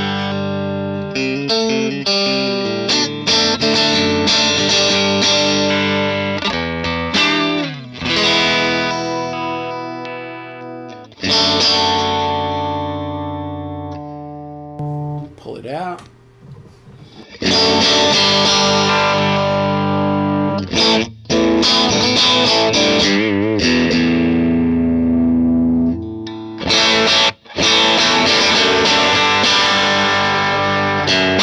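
Electric guitar played through a Divided by 13 FTR 37 tube amp set to full power, with overdriven chords and notes that ring out and decay. The playing breaks off briefly a few times, and there is a wavering, bent note near the end.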